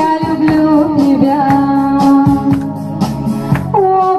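A slow song sung in Russian with instrumental accompaniment and a steady beat. The singer holds one long note, then moves up to a higher note near the end.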